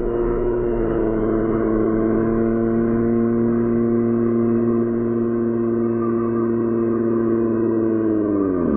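A steady, held droning tone, several pitches sounding together without change, which starts to sink in pitch right at the end.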